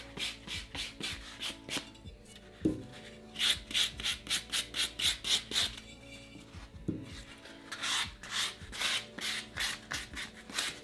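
Super-fine sanding pad rubbed back and forth over a chalk-painted, glazed urn, about four quick strokes a second, in three runs with short pauses between. It is sanding back the glaze to let the paint colours beneath show through.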